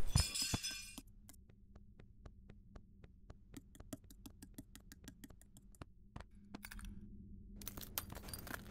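The tinkle of breaking glass dies away in the first second. Then comes a long, even run of light clicks, about five a second: a small dog's claws tapping on wooden stairs and floor as it trots down. A short burst of scuffing noise comes near the end.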